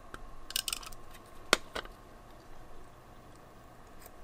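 Paper strips rustling as they are handled on a card, then a single sharp click about a second and a half in with a softer one just after.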